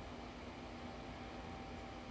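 Faint, steady background hiss with a low, even hum and no distinct sound events: room tone in a pause between words.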